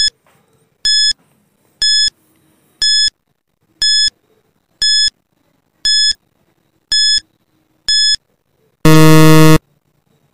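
Countdown-timer sound effect: short electronic beeps once a second, nine in all, then a louder, lower buzzer lasting under a second near the end that marks time up.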